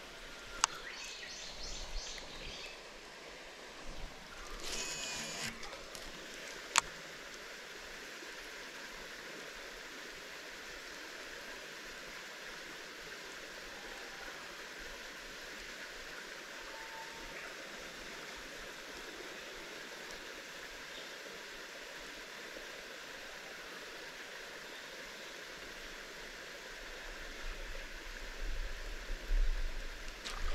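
Steady, even hiss of flowing water, with a few short high-pitched chirps in the first six seconds and a single sharp click about seven seconds in.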